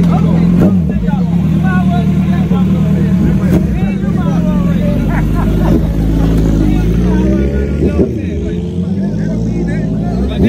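Sport-bike engine idling steadily close by, its note dropping and fading near the end, under crowd chatter.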